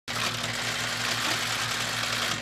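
Many camera shutters clicking rapidly and continuously together, blending into a dense rattling hiss over a steady low hum.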